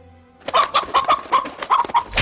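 A chicken clucking: a rapid string of short, sharp clucks, about eight of them, starting about half a second in.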